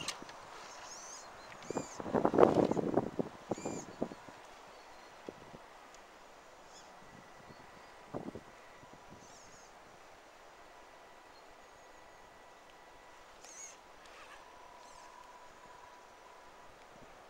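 Axial SCX10 Deadbolt RC crawler climbing a steep dirt bank. About two seconds in comes a burst of scrabbling and knocking from its tyres and chassis on soil and scrub, then a lone knock later and quieter crawling, with birds chirping.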